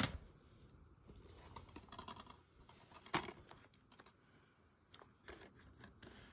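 Plastic DVD cases being handled on a carpet: a few sharp clicks and taps as cases are picked up and set down, with faint handling noise between them.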